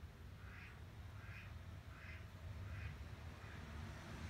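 A bird calling faintly: four short calls evenly spaced about two-thirds of a second apart, with a fainter fifth near the end, over a low steady rumble.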